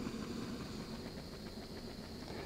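Small gas canister camp stove burning steadily under a steel canteen cup of coffee that is just starting to boil, a low, even hiss.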